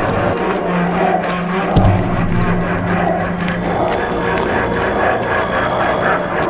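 Dramatic film score: low held notes under a pulsing mid-range pattern, with one heavy drum hit a little under two seconds in.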